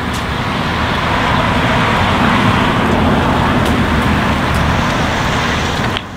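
A car driving past on the street: steady tyre and engine noise that swells over the first couple of seconds and then holds.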